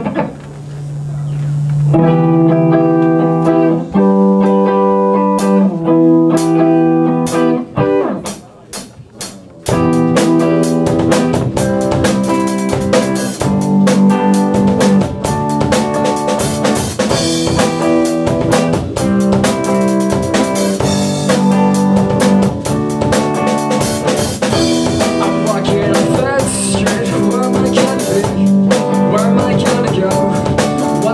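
Live rock band starting a slow song: electric guitar chords ring out alone for the first several seconds, changing about every two seconds, then the drum kit and the rest of the band come in together about ten seconds in and play on steadily.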